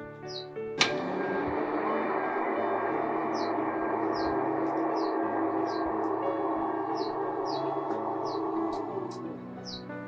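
A car door shuts about a second in, with one sharp knock. A steady rushing noise follows and fades away near the end, over soft background music with repeated bird chirps.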